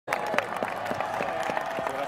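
Stadium crowd applauding, with many separate claps standing out.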